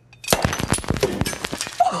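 A champagne bottle opened with a sabre: a sharp pop about a third of a second in, then a dense crackling rush as the champagne sprays and foams out of the bottle. A gasp near the end.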